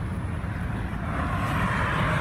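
Outdoor background noise: a constant low rumble of traffic, with a passing vehicle's noise swelling from about a second in.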